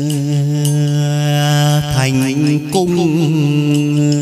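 Chầu văn (hát văn) ritual singing: a male voice holds long drawn-out vowels, the pitch stepping and sliding about two and three seconds in, over the ensemble with light percussion ticks.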